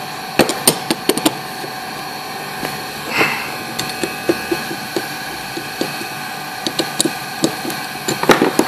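Aluminium mould plates handled and fitted together over cap-head-bolt guide pins on a wooden bench: a quick run of sharp metal clicks and knocks, a brief scrape about three seconds in, then scattered lighter taps as the plate is seated.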